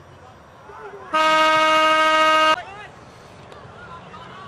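A single loud, steady horn blast, held at one pitch for about a second and a half and starting about a second in.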